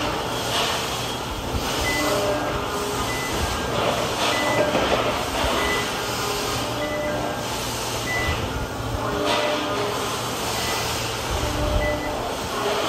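Forklift warning beeper giving short high beeps, evenly spaced about once a second, as the forklift drives off. A steady low hum runs underneath.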